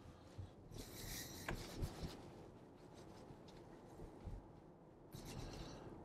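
Faint low road and tyre rumble heard inside the cabin of a moving Tesla electric car, with a soft brief rustle about a second in.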